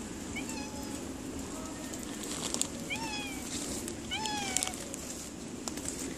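Domestic cat meowing about four times, short meows that fall in pitch.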